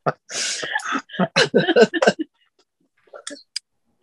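People laughing: a breathy burst of laughter, then a quick run of short laughing pulses that dies away about halfway through. A few faint clicks follow near the end.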